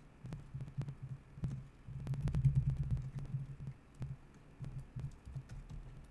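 Typing on a computer keyboard: irregular keystrokes, each a short click with a dull low thud, coming thickest about two to three seconds in.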